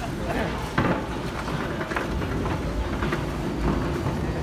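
Steady low rumble of a long Metro station escalator running downward, with a short knock just under a second in.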